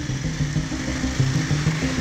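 Several dual-sport motorcycles riding slowly in a group, engines running in a steady low rumble, with background music underneath.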